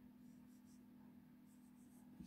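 Faint strokes of a dry-erase marker writing on a whiteboard, a few short scratches in two brief clusters.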